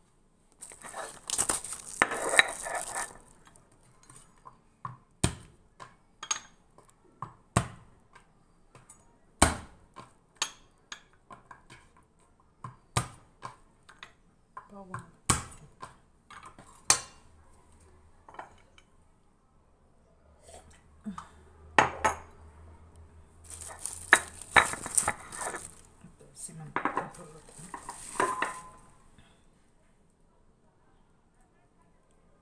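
Kitchen utensils and dishes knocking and clinking on a counter during food preparation, a string of separate sharp clicks, with two longer spells of rustling noise, one near the start and one near the end.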